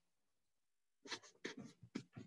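Silence, then about a second in a quick run of dry scratching and rustling strokes on paper close to the microphone.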